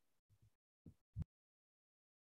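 Near silence on a video call, broken by a few faint, very short low blips in the first second or so.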